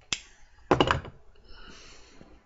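A tobacco pipe being lit with a lighter: a single sharp lighter click just after the start, then a short, loud rush of air lasting about a third of a second, about three-quarters of a second in.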